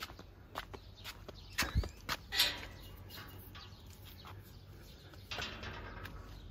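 Footsteps and scattered light knocks on a concrete yard, the loudest a thump about two seconds in, with faint bird chirps in the background.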